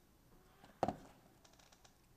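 A short knock a little under a second in, then a few faint ticks, from jewellery pliers handling a small metal jump ring as it is opened.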